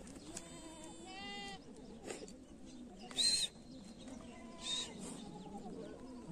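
Goats bleating: two short pitched bleats in the first second and a half. A louder, short high-pitched call about three seconds in and a fainter one near five seconds follow, over the background of the grazing herd.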